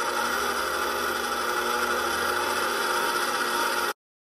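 KitchenAid Professional 600 stand mixer running steadily, its motor whirring as the wire whip beats a frothy batter in the stainless steel bowl. The sound cuts off suddenly just before the end.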